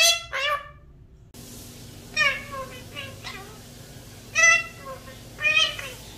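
Indian ringneck parakeets calling in short pitched squawks. Two calls come close together at the start, then after a brief lull single calls come roughly a second apart, some sliding down in pitch.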